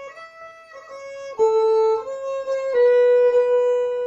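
Solo fiddle playing a slow phrase of a Swedish polska, one bowed note after another, recorded through an old phone's microphone. The notes are soft for the first second or so, then louder, and settle on one long held note.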